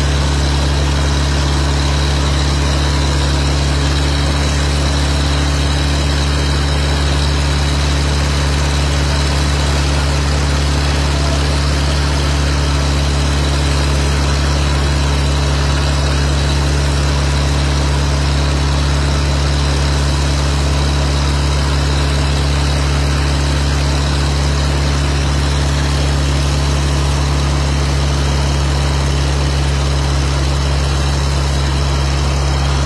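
A large engine running steadily at a constant speed, a deep unchanging drone.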